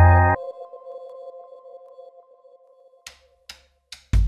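Background music: a loud held chord breaks off shortly in, leaving a faint lingering tone that fades away, with a few short clicks near the end.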